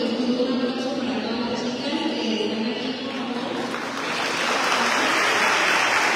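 A woman's voice, distant and hard to make out, followed by an audience applauding; the clapping starts about four seconds in and grows louder.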